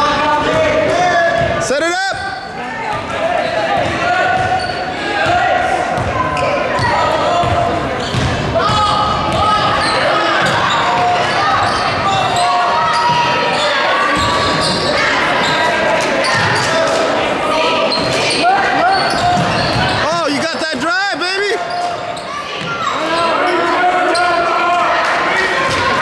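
Game sound in a gymnasium: players and spectators calling out continuously while a basketball is dribbled on the hardwood court.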